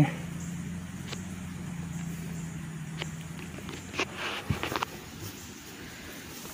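Footsteps through dry leaf litter and brush, with scattered twig snaps and leaf crunches that bunch up about four to five seconds in, over a faint low steady hum that fades out about halfway.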